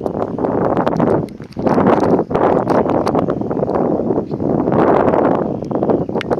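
Wind buffeting the microphone in gusts, a loud rumbling rush that swells and dips about once a second, with scattered short crackles.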